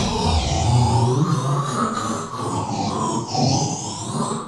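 Electronic intro music and sound effect: a continuous, wavering synthesized sound.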